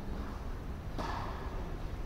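A tennis ball is struck once by a racket about a second in, and the hit echoes briefly in a large indoor court hall, over a low steady rumble.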